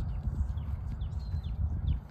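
Cattle grazing close by, tearing and chewing grass in irregular rough crunches over a low rumble.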